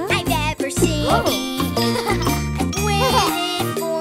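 Cheerful children's cartoon background music with bell-like, tinkling notes over a steady low beat, with short gliding pitched sounds about a second and three seconds in.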